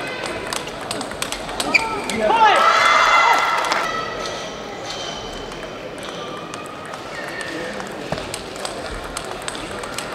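Table tennis ball clicking off bats and the table during a rally. About two seconds in, as the point ends, comes a loud voiced shout lasting about a second and a half. Near the end the clicks of the next rally start up.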